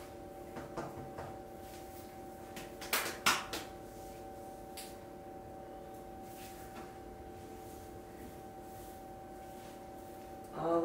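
A steady hum of several fixed tones, with a few light knocks and taps; the loudest pair comes about three seconds in.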